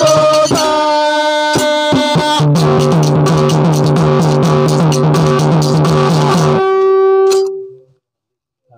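Devotional bhajan accompaniment: held melodic notes over sharp drum and hand-cymbal strokes, then a fast repeating drum rhythm. The music stops about six and a half seconds in, leaving one held note that fades out near the end.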